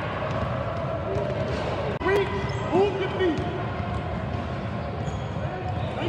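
Basketball being dribbled on a gym floor during a game, with players' and spectators' voices around it and a couple of short shouts a few seconds in.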